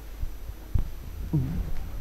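Steady low electrical hum on the studio sound, with a few faint soft thumps and a brief short vocal sound shortly before speech resumes.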